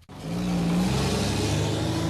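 Road traffic noise from a busy street work zone, with a heavy vehicle's engine running. The noise starts abruptly and then holds steady.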